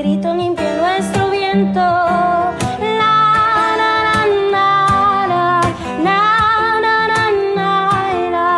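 A song: long, wavering sung notes over strummed guitar and a repeating bass line.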